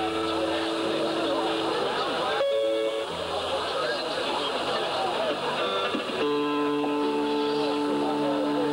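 Rock'n'roll band playing live, double bass and guitar, with a voice holding long sung notes.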